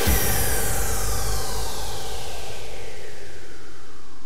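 Electronic dance music in a drumless breakdown: a noisy synth sweep falls steadily in pitch over a sustained low bass.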